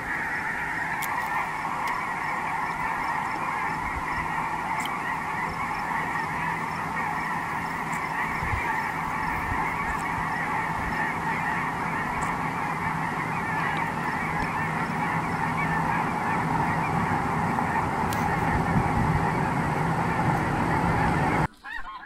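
A huge flock of snow geese calling all at once: a dense, steady din of countless overlapping honks. It cuts off suddenly near the end.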